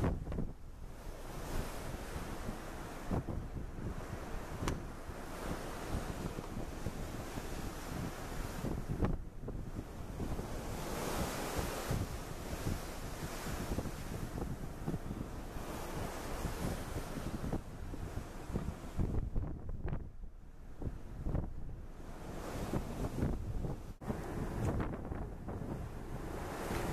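Wind gusting on the microphone over the wash of the open sea, the noise rising and falling.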